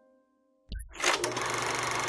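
A sudden whooshing hit about two-thirds of a second in, then a steady mechanical whirring rattle: an end-screen sound effect.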